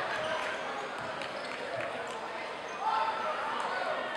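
A basketball being dribbled on a hardwood gym floor, a few separate bounces, over the chatter of spectators in the hall.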